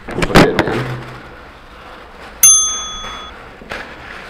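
Loud rustling and handling of the camera near the start. About halfway through comes a single bright bell-like ding that rings for under a second and fades away.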